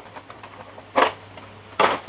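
Two short clatters, about a second apart, as the aluminium street-lamp housing and its hinged clear plastic cover are handled, over a faint steady hum.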